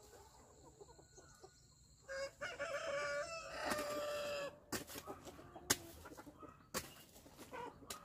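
A rooster crows once, a long call of about two seconds. It is followed by a hoe chopping into dirt, three sharp strikes about a second apart, the middle one loudest.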